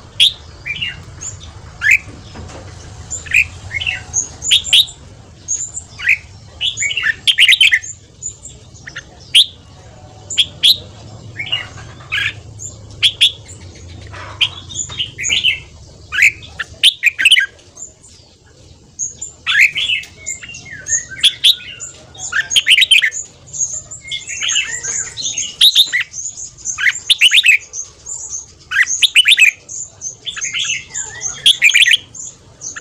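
Red-whiskered bulbuls singing and calling in rapid, dense runs of short sharp chirps and quick whistled phrases, with a brief lull a little past the middle.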